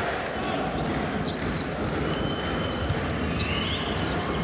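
Arena sound from a basketball game: a ball being dribbled on the hardwood court over steady crowd noise, with brief high sneaker squeaks about halfway through.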